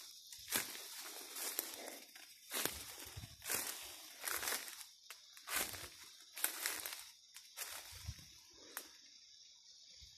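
Footsteps crunching through dry leaf litter on a forest floor, about one step a second, dying away near the end.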